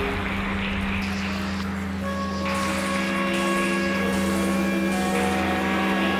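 A live mixed ensemble of strings and winds playing long held notes: a steady low note over a deeper drone, with more sustained tones stacking up above it from about two seconds in, over a layer of noisy hiss.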